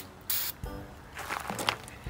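A brief hiss from an aerosol spray can, about a quarter second in, with faint background music under it.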